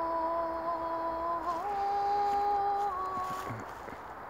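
A woman singing long, sustained vowel notes at a steady pitch, stepping up to a higher note about one and a half seconds in and shifting again near three seconds, then breaking off shortly before the end.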